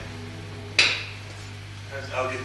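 A single sharp metallic clink about three-quarters of a second in, ringing briefly, over a steady low electrical hum from the band's amplifiers.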